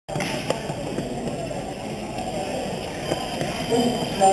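Background chatter of many people in a large sports hall, with a few sharp knocks, the first about half a second in; a man starts speaking near the end.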